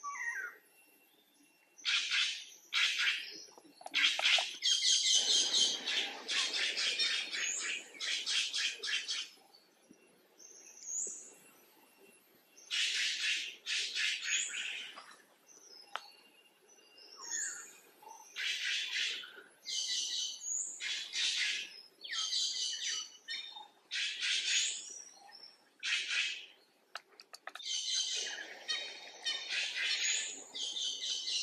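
Birds chirping and calling: repeated bursts of rapid, high-pitched notes with short pauses between them.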